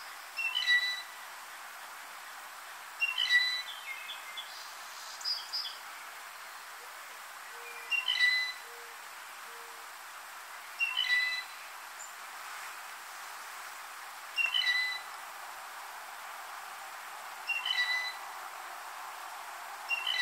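Blue jay giving its squeaky-gate call, also known as the rusty pump-handle call: a short creaky phrase repeated about every three seconds, seven times.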